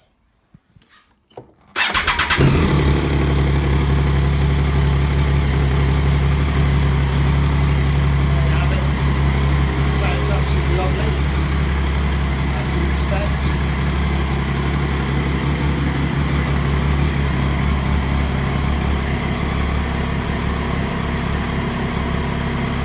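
Triumph Daytona 675's inline three-cylinder engine starts on the button about two seconds in, then idles steadily.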